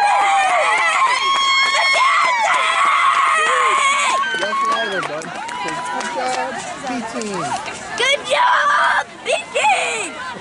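Young girls' voices shouting a cheer together, with long held calls at first, then a mix of overlapping children's and adults' shouts and chatter, with another loud burst of shouting near the end.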